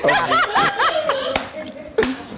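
People laughing in a run of short rising-and-falling bursts, with a single sharp click about midway.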